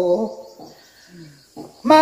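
A man singing a Tai folk song, voice alone. A held note ends just after the start, a quiet breath-pause follows with a faint low falling vocal sound, and the singing comes back in near the end.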